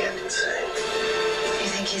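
Film trailer soundtrack: background music holds one steady note, and a man's voice starts a line near the end.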